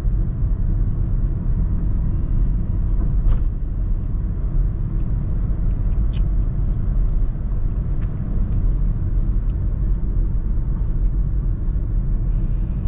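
Steady low rumble of engine and road noise inside the cabin of a Honda Brio driving at an even pace in third gear, with a few faint clicks.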